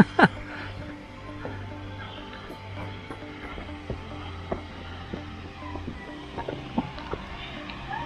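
Footsteps on a gravel platform path, coming at an uneven walking pace, over a steady low hum.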